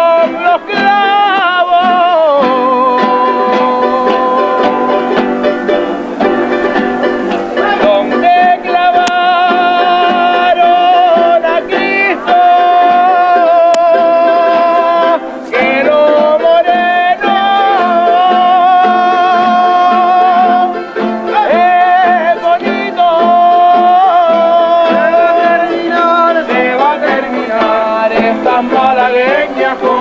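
Canarian folk music played live: voices singing long, wavering held notes over strummed and plucked guitars and other small string instruments, in a steady dance rhythm.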